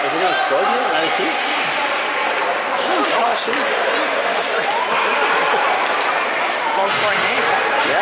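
Several overlapping voices in an ice rink, over a steady hiss of arena noise; no single sound stands out.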